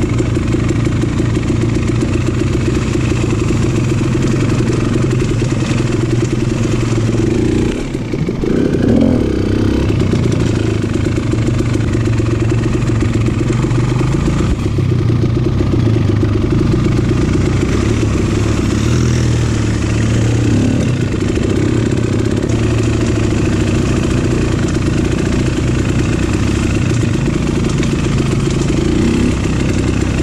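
Dirt bike engine running under way, heard from the rider's seat, its pitch rising and falling with the throttle. About eight seconds in it drops off briefly and then picks up again.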